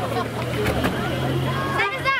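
A motor vehicle engine idling steadily close by, under the chatter of a crowd of children and adults; a child's high voice rises near the end.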